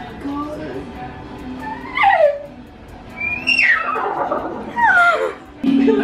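A woman imitating a horse's whinny: three high squeals, each sliding steeply down in pitch. Music with a held low note starts just before the end.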